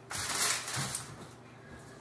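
A brief rustling clatter, about half a second long, just after the start, as an electric hand mixer is handled and set down on a kitchen counter; then only faint room sound.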